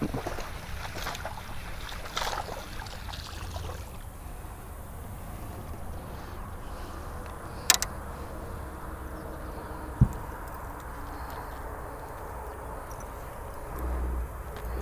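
Landing a bass by hand in a small boat: a baitcasting reel being cranked in the first few seconds, then handling knocks, with one sharp click about eight seconds in and a short knock about two seconds later, over a low steady rumble.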